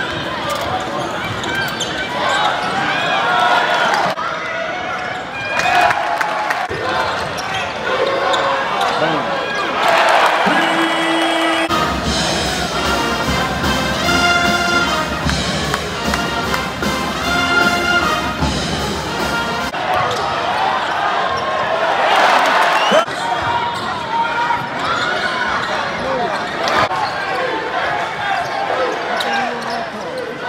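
Basketball game heard from the stands of an arena: crowd chatter and the sounds of play, with the ball bouncing on the court. Shortly before the middle, music with a steady beat plays for about eight seconds, then stops.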